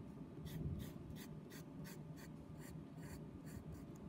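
Pencil scratching on paper in short, quick repeated strokes, about three a second, as short lines are drawn up and back down.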